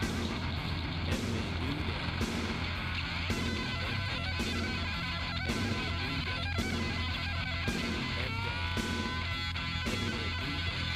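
Heavy metal instrumental: distorted electric guitar playing lead over drums and bass with a fast, pulsing low end. About eight seconds in, the guitar bends up into long held notes.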